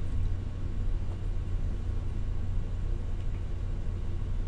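Steady low rumble of room and recording background noise, with no other events.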